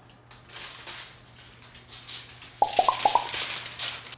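Aluminum foil crinkling and crackling as its sides are folded up by hand. About two and a half seconds in, a quick run of four or five short, high notes is the loudest sound.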